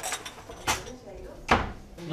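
Two short knocks about a second apart, the second louder, as hard objects are handled or set down.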